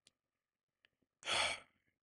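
A man's single short sigh, a breath out lasting about half a second, starting a little past halfway, amid near silence.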